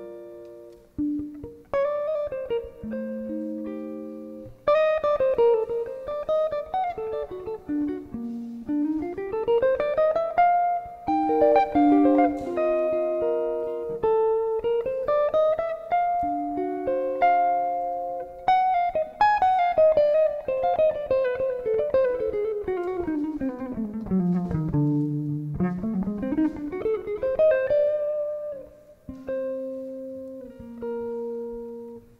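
Semi-hollow electric guitar playing a frevo melody: plucked single-note lines and chords, with long runs that climb and fall in pitch, the deepest descent coming shortly before the end.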